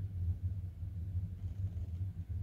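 A steady low hum with no other sound over it.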